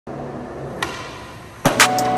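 A skateboard's tail popping, then less than a second later a loud crash as the skater and board slam onto a hard tile floor, with a second hit right after. Music comes in at the crash.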